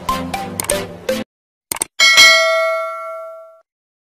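Electronic dance music cuts off about a second in. A quick double click follows, then a single bright bell-like ding that rings out and fades over about a second and a half: the click and notification-bell sound effects of a subscribe-button animation.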